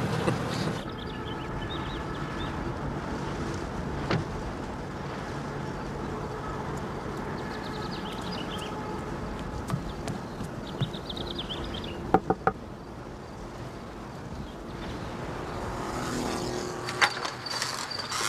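Steady running noise of a car's engine and tyres on the road, with two sharp knocks about twelve seconds in.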